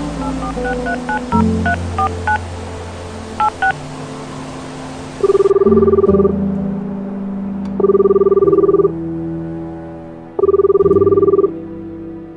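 A phone number dialled on a keypad, a quick run of about ten touch-tone beeps, then three pulsed ringing tones, each about a second long and spaced about two and a half seconds apart: the call ringing out before it is answered. Soft music plays underneath, with a rain-like hiss that cuts off about halfway through.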